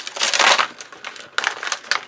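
A clear plastic stamp sheet being handled and a clear stamp peeled off it, making a crinkling plastic crackle that lasts about half a second near the start. A few light clicks follow.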